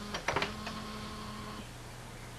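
A quick run of sharp clicks about a quarter of a second in, over a steady low electrical hum that drops lower in pitch near the end.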